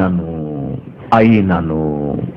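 A man's voice lecturing in Telugu, drawing out two long syllables whose pitch falls slowly.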